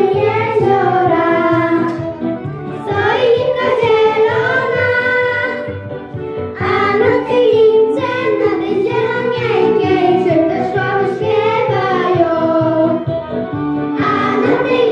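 A group of young girls singing a song together into handheld microphones, with musical accompaniment underneath.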